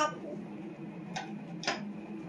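Three short, sharp taps on a wooden floor as a baby crawls and pats the boards with her hands: one right at the start, then two more about half a second apart over a second in. A steady low room hum lies underneath.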